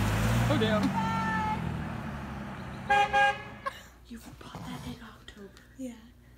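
A car horn tooting twice in quick succession about three seconds in, two short blasts, over the fading noise of a car pulling away.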